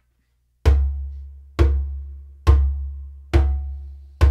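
Djembe bass strokes played with the flat palm in the center of the head, alternating hands: four deep strikes a little under a second apart, each dying away before the next. This is the bass, the lowest of the drum's three basic strokes.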